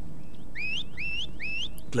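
Shepherd's whistle commands to a working sheepdog: about five short whistles in quick succession, each rising in pitch and then holding briefly.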